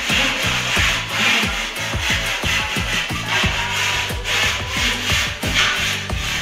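Rasping strokes of a gypsum plaster ceiling panel's edge being trimmed, about two a second, over background music with a heavy sliding bass beat.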